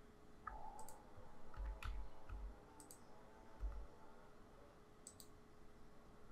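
A handful of faint, sparse computer mouse clicks and keyboard key presses, with a faint hum under the first couple of seconds.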